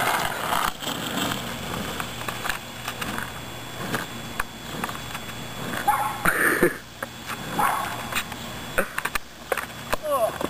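Skateboard wheels rolling on a concrete street, with many irregular clicks as they cross the pavement joints. A few short pitched calls come about six seconds in and again a little later.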